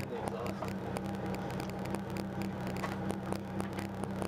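A Volkswagen MKII Jetta rally car's engine idling steadily, heard from inside the cabin, with frequent light irregular clicks.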